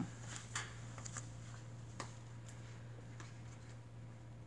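Quiet handling sounds at an embroidery machine: a few faint, scattered clicks and ticks, one sharper click about two seconds in, over a steady low hum.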